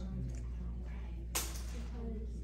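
Faint classroom chatter of students talking among themselves over a steady low hum, with one sharp click or snap about a second and a half in.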